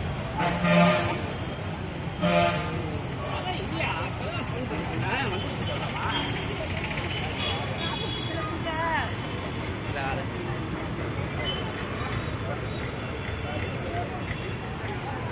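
Busy street traffic with two short vehicle horn honks, the first about a second in and the second about two and a half seconds in. Vehicles keep running and people's voices carry on in the background.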